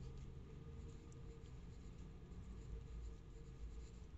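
Faint pen-on-paper scratches and small taps over a low, steady room hum.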